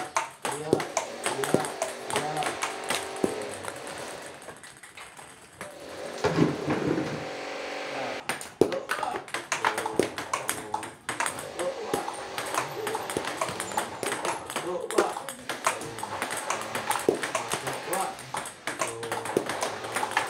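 Plastic table tennis balls clicking rapidly off paddles and bouncing on the table in a fast multiball feeding drill, with a short lull about five seconds in. A voice can be heard under the clicks.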